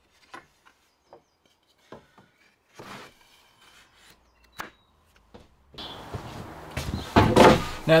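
A few faint, scattered light taps and clicks of thin wooden strips being handled and laid against a glazed window frame, with one sharper click past the middle. Near the end the background rises and a man's voice begins.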